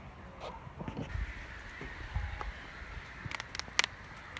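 Faint bird calls in a woodland, with low rumble and a few sharp clicks near the end, like steps on a dirt path.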